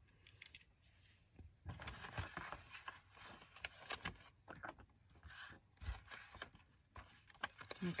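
Soft, irregular paper rustling and crinkling as hands handle a handmade paper journal and its pages, starting about a second and a half in, with small taps and scrapes among them.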